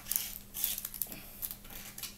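Paper and sticky tape being handled on a table: a string of small clicks and rustles as a strip of tape is pressed onto a paper cut-out.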